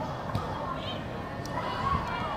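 Faint background voices over a steady outdoor hum, with a short soft knock about a third of a second in.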